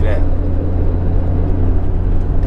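Nissan Skyline GT-R (BCNR33) RB26 twin-turbo straight-six heard from inside the cabin, cruising with a steady low drone and road noise. The exhaust is toned down by an inner silencer.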